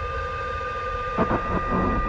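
Film-trailer sound design: a low rumble under a steady high ringing tone, with a sudden sharp hit a little over a second in.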